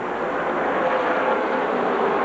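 Several V8 late-model stock cars running at racing speed on track, their engines merging into one steady, loud drone.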